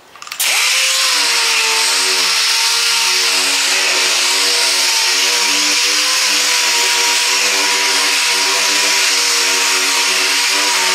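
Air-powered dual-action palm sander with a 2,000-grit foam pad, starting suddenly about half a second in and then running steadily at high speed, a steady whine over a loud hiss, while wet sanding (color sanding) clear coat.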